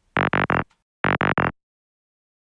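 Synthesizer stabs played back from a music-production session: two bursts of three quick pitched hits, the second about a second after the first, then silence.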